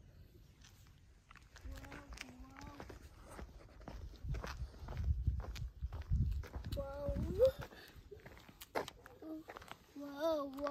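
Footsteps on a paved path, with a small child's voice in short snatches: a brief low hum about two seconds in and a short rising note around seven seconds. A low rumble from wind on the microphone swells in the middle.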